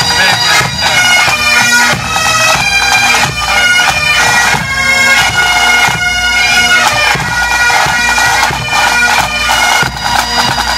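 Massed pipe band playing: many Great Highland bagpipes sounding a steady drone under the chanter melody, with snare and bass drums beating along.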